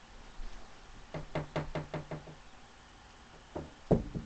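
A quick run of about seven hollow knocks, roughly six a second, on a resonant surface, then two louder thumps near the end, the last the loudest.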